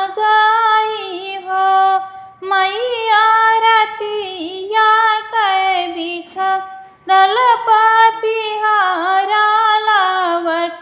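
A high female voice singing an Awadhi sohar folk song, one melodic line in long bending phrases, with short pauses for breath about two seconds in and again around six and a half seconds.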